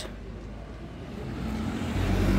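Street traffic: a car's engine running close by, a low rumble that grows louder toward the end.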